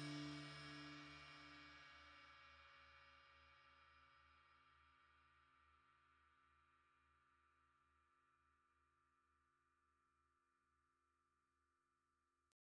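The final guitar chord of the song rings out and fades away over about four seconds, leaving near silence.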